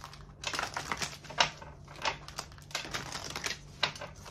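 Tarot cards being shuffled and handled: an irregular run of crisp card clicks and flicks, with a few louder snaps.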